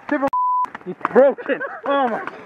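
A short pure-tone censor bleep of about a third of a second, a single steady beep with the rest of the sound muted under it, blanking out a word. Shouted exclamations follow it.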